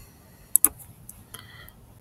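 Two quick computer mouse clicks, close together, about half a second in.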